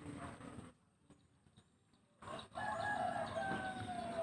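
After about a second and a half of near silence, a long drawn animal call starts in the background partway through. It is held on one note and slowly falls in pitch.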